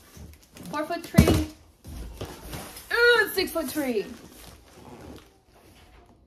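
A loud thump about a second in as a large cardboard box is handled, with a few wordless high-pitched voice sounds rising and falling around it.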